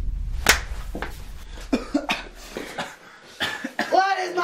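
A man coughing and gasping in short, irregular bursts, over a low rumble that fades away about three seconds in.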